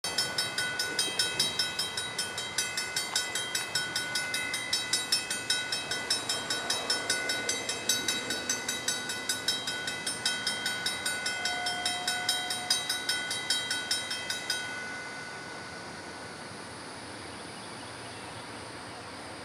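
Railroad grade-crossing warning bell ringing rapidly, about four strikes a second, as the crossing signals activate for an approaching train; it cuts off suddenly about 15 seconds in, leaving a steady low rumble. A faint, short horn note sounds about 12 seconds in.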